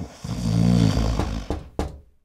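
A person snoring: one long rumbling snore lasting just over a second, followed by a few short clicks.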